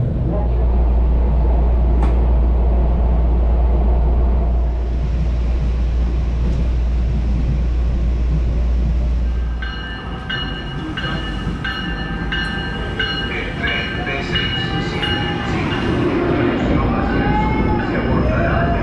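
Steady low rumble of an elevated rail car, heard from inside as it rides along. About ten seconds in this gives way to a Tri-Rail commuter train pulling into a station: high tones that sound on and off, then wheel squeal as it slows.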